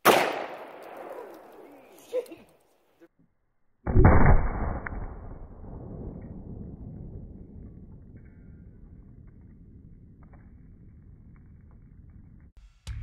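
A .50 BMG armor-piercing incendiary cartridge going off outside a gun barrel, its case bursting apart with nothing around it. It is heard as two bangs: a sharp one at the start that dies away over about two seconds, and a duller one about four seconds in, followed by a long rolling echo that fades slowly.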